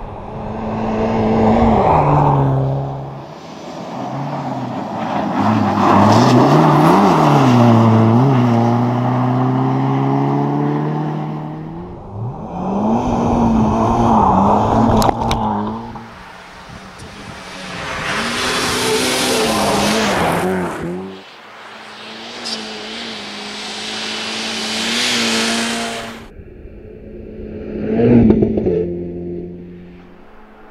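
Renault Clio 1.6 rally car engine revving hard on a snowy special stage, over several passes. The pitch climbs and drops again and again as it shifts gears and lifts for corners. Loud rushing noise comes with the closest passes.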